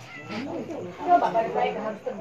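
A domestic cat meowing, with a rising-then-falling call early on, among people's voices.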